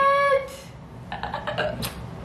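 A woman's drawn-out, high-pitched exclamation, held on one note, ends about half a second in. It is followed by a run of short, breathy laughs and a brief 'uh' near the end.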